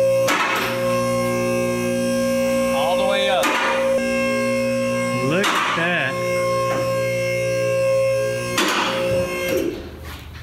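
Background music led by guitar, with sustained notes that cut off suddenly near the end.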